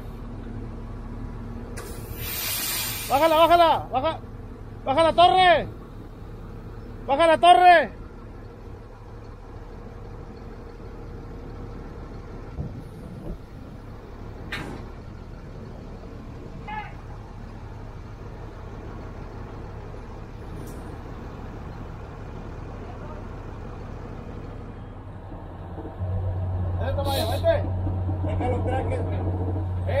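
Heavy equipment diesel engine running steadily at low idle, with a short sharp hiss of air let off about two seconds in and three drawn-out shouted calls soon after. Near the end the engine note deepens and gets louder.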